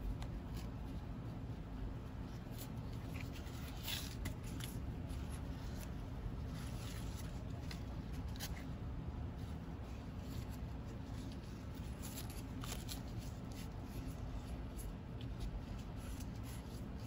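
Faint rustling of grosgrain ribbon being handled and folded by hand, with a few soft scattered ticks over a low, steady background hum.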